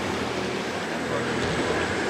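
Steady outdoor background rush with faint, indistinct voices murmuring underneath.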